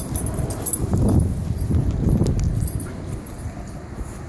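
Two Airedale terriers playing together: low dog noises and scuffling, loudest about a second in and again at about two seconds, over a low rumble on the microphone.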